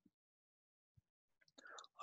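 Near silence, with a faint tick about a second in and a soft breath and mouth sounds near the end.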